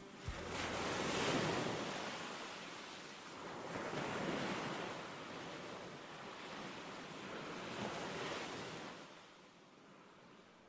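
Sea waves washing in, rising and falling back in about three slow surges, with some wind, fading away near the end.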